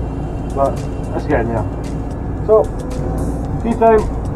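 Excavator's diesel engine running with a steady low rumble, heard from inside the cab, with a man's voice over it.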